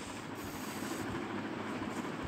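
Pencil rubbing across paper as a line is drawn under a sum, a steady soft scratching.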